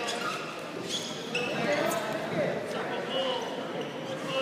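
Wrestling shoes squeaking and scuffing on the mat in short chirps as the wrestlers hand-fight, with a few sharp slaps, under voices in an echoing gym.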